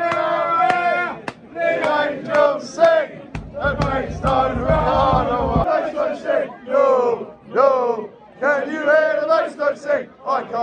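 Football supporters chanting in the stand, loud voices close by singing held notes, with a low rumble on the microphone for about two seconds in the middle.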